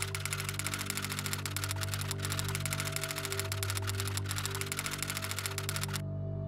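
Typewriter key clicks, a rapid even train of them, over sustained low music.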